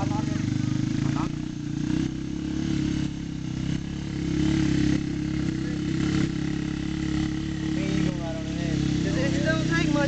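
A four-wheeler (ATV) engine running while pulling a rider on a car hood by a rope, its level swelling about halfway through. Voices come in over it near the end.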